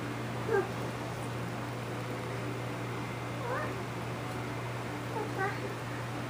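Three short, high vocal calls that glide in pitch, about half a second in, midway through and near the end.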